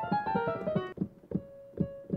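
Kawai digital piano being played: a quick, dense run of notes for about a second, then sparser single notes with one note held, somewhat quieter.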